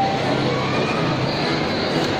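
Steady background roar of a busy shopping-mall interior, a dense even noise with a faint low hum underneath.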